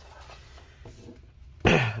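Faint handling sounds as a laptop is tipped onto its side on a desk, then a man clears his throat loudly, once, near the end.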